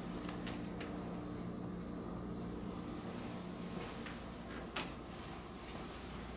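Quiet indoor room tone: a steady low hum with a few light clicks, and one sharper knock about three-quarters of the way through.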